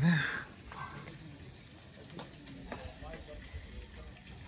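One spoken word, then quiet outdoor background with a few faint clicks and faint distant voices.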